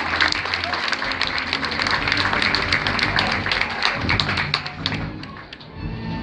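Audience and panel clapping after a poetry reading, dying away about five seconds in.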